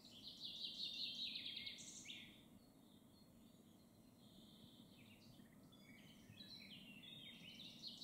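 Faint songbird song: a phrase of quick chirps in the first two seconds, then a pause, and more song starting near the end, over a faint low background noise.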